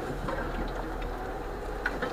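Lada 4x4 Urban 2131's engine running low and steady as the car creeps in first low gear, heard from inside the cabin, with a single small click near the end.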